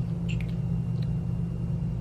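Steady low background hum of the room, with a few faint small clicks of a liquid lipstick tube and applicator wand being handled.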